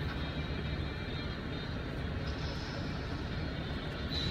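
Steady low rumble of a car running slowly in line, heard from inside the cabin.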